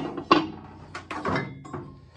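Metal belt pulleys clanking against each other and the sheet-metal bin as they are handled: a sharp clank about a third of a second in, then a few lighter knocks with a faint ringing.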